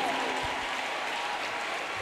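A congregation applauding, a steady wash of clapping that slowly dies down.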